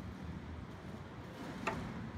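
Low, steady outdoor background rumble with a single light click near the end, as a stemmed beer glass is set down on a wooden table after a sip.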